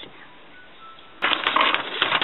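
A sheet of lined notebook paper rustling and crackling as it is handled, starting a little over a second in after a quiet pause.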